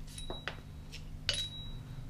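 A few light metallic clinks, two of them followed by a brief high ring, from small metal hardware being handled, over a steady low workshop hum.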